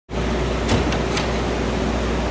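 Steady low rumble and hum of background machinery, with a few faint brief noises in the middle.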